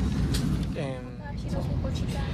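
Steady low rumble in the cabin of an Airbus A321neo at the gate, before the engines are started. A short voice sound falls in pitch about a second in.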